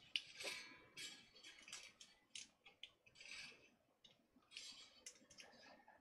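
Faint, irregular clicks and short scratchy rustles of steel guitar strings being handled at an electric guitar's headstock, the wire scraping and ticking against the tuning posts.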